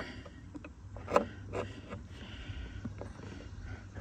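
Faint handling noise: a few light knocks and scrapes, about a second in, as a door check and a hand work through the inside of a 2009–2014 Ford F-150 door, over a low steady hum.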